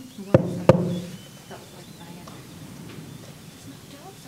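Two sharp knocks on a wooden table, about a third of a second apart, each echoing briefly, then quiet room tone. They are a medium's own two knocks at a séance table, the signal for a spirit to knock twice back.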